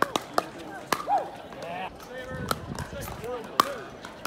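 Paddles striking a hard plastic pickleball in a fast rally: a string of sharp, hollow pops at uneven gaps, the loudest near the end. Players' voices call out between the hits.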